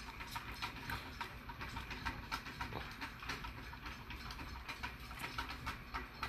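Faint irregular small clicks over a low steady rumble, with soft breathing of people drawing on and exhaling joint smoke.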